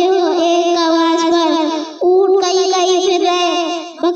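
A young boy's voice chanting in long, held, wavering notes, a melodic recitation sung rather than spoken, in two phrases with a short breath about halfway through.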